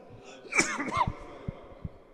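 A man sneezes once into his hand, about half a second in: a short, sharp burst.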